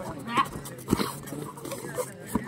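Sharp shouts from kabaddi players and onlookers during a raid, with a few sharp thuds from the players' feet and bodies on the foam mats.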